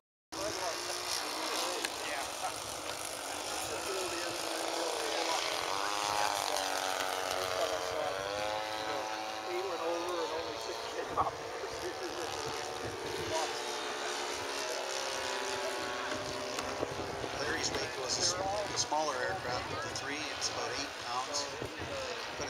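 Small RC model airplane engine running, its pitch rising and falling about six to nine seconds in, with indistinct voices around it.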